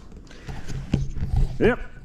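Cow lowing: a low, steady moo starting about half a second in and lasting about a second.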